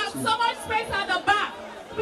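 A person speaking, with chatter in the background.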